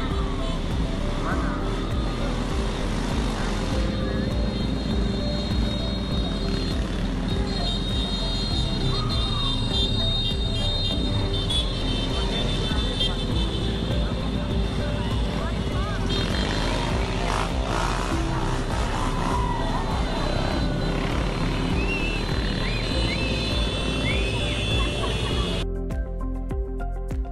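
Live street sound of a passing motorcycle convoy, with engines and crowd voices, under steady background music. The street sound cuts off just before the end, leaving only the music.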